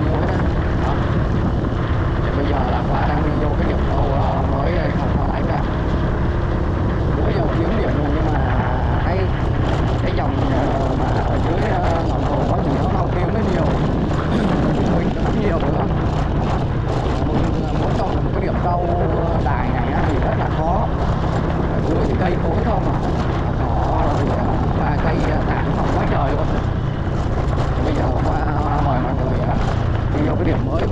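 Honda scooter's small engine running steadily while it is ridden along a dirt track: an even, unbroken low drone.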